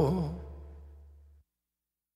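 The closing held note of a Latin rock song, wavering in pitch over a low bass tone, fading out over about a second. The bass cuts off about a second and a half in, leaving silence.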